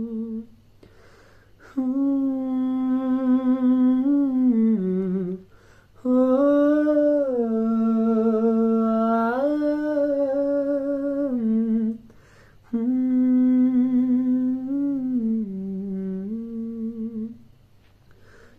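A man humming a slow song melody with no accompaniment, in three long phrases with short breaths between them.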